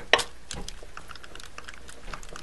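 Clear acrylic roller rolling a slice of polymer clay flat on deli paper: light, scattered clicks and taps, with a sharper tap just after the start.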